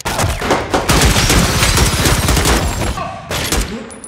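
Rapid gunfire of a film shootout: a dense run of shots in quick succession that thins out about three seconds in, followed by a few last shots.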